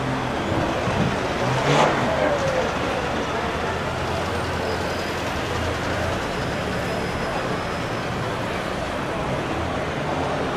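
City street traffic: cars running and passing, with voices in the background and a brief sharp sound about two seconds in.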